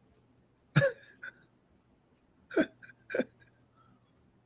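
A man laughing in three short bursts: one about a second in, then two close together near the end.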